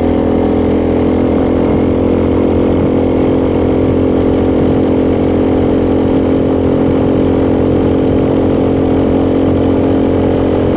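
Honda Grom's 125 cc single-cylinder four-stroke engine running at a steady cruise, its exhaust loud, with the pitch holding even throughout.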